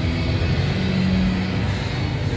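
Steady background din of a large indoor exhibition hall, with music playing in the background.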